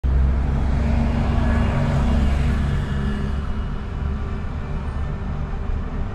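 Road vehicle engine running close by, with a steady low rumble and traffic noise, louder for the first three seconds and then easing off a little.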